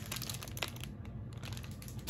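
Faint rustling and crinkling of wound-care wrapping supplies being handled, with a few small clicks.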